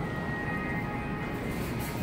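Big-box store ambience: a steady hum with faint background music.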